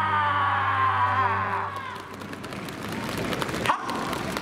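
The end of the dance music: a long held note glides down in pitch over a sustained chord and fades out about halfway through. After it comes a spread of scattered hand clapping from the audience.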